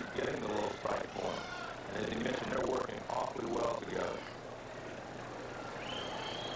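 Ballpark crowd noise with several raised voices for the first four seconds, then settling into a steady crowd hum.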